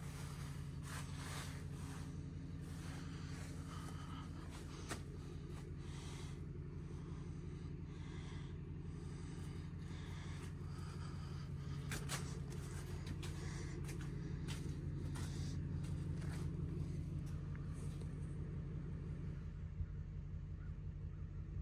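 Steady low hum of an idling engine, with scattered short scuffs and clicks of footsteps as the camera is walked along.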